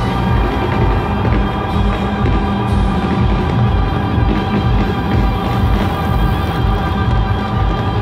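Live music from a festival main-stage sound system, heard from outside the arena fence: sustained chords over a steady, heavy bass beat.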